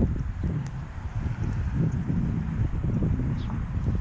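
Wind buffeting the microphone: an irregular low rumble.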